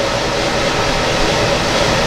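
A steady, even rushing noise with no speech over it.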